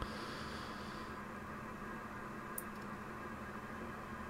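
Steady low hiss with a faint electrical hum, and one faint tick about two and a half seconds in.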